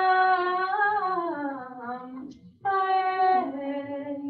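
A woman's voice singing a slow prayer melody in long held notes that slide downward. It breaks off briefly about two and a half seconds in, then starts a second phrase that steps down.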